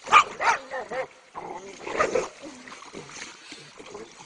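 A dog yelping and whining in two bursts of short calls, the loudest just after the start and another about two seconds in.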